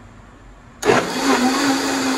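Countertop blender switched on about a second in, its motor spinning up fast to a steady, loud whir as it purees a liquid salsa of charred tomatoes, serrano chiles and garlic.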